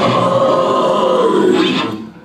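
Live heavy metal band letting its last chord ring, distorted electric guitars holding a loud sustained note, which then stops abruptly as the song ends.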